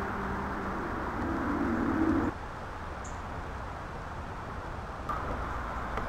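A bird calling outdoors in low, steady notes that turn into a pulsing stretch, cut off suddenly a little over two seconds in. After that only a quieter outdoor background remains.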